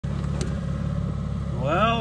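Outboard motor running steadily at trolling speed, a low even drone, with a man's voice starting near the end.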